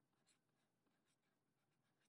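Near silence, with a few faint scratches of a marker pen writing on paper.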